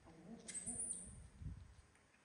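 A woman's soft, low hooting coos, a few short sounds in a row, with a thin high squeak about half a second in.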